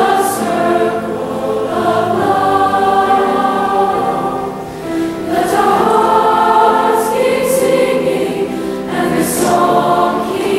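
Large mixed high-school choir singing sustained chords. The sound dips briefly about four and a half seconds in, then swells again.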